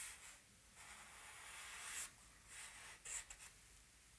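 Compressed charcoal stick scratching across newsprint in separate strokes: a short one at the start, a longer one that grows louder up to about two seconds in, then several short, quick strokes near the end.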